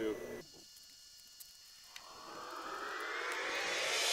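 The last spoken word, then a second and a half of near silence. Then a rising whoosh that swells steadily louder over two seconds: an edited transition effect leading into a drum-backed music track.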